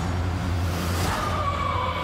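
Dark horror trailer score: a steady low drone, joined about a second in by a high, thin sustained tone that holds.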